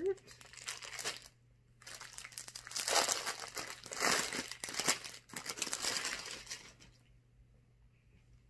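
Clear plastic garment bag crinkling as it is handled and opened to take out a shirt. The crinkling comes in bursts with a short pause about a second in, is loudest in the middle, and dies away near the end.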